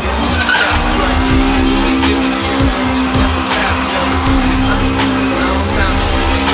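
Car engine held at steady high revs while its tyres skid and spin through a smoky donut on pavement.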